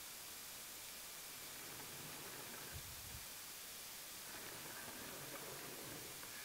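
Faint, steady hiss of background noise with no distinct event, and a brief low thud about three seconds in.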